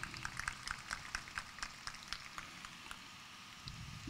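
Faint, irregular crackling clicks, several a second, thinning out after about three seconds, over a low hum: a paper tissue crinkling in the hand near a hand-held microphone.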